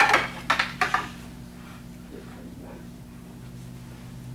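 Wooden bokken practice swords clacking together as partners strike and block: a few sharp clacks in the first second. Then the room goes quiet apart from a low steady hum.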